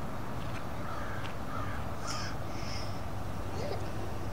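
A few short bird calls between about one and three seconds in, over a steady low outdoor background noise.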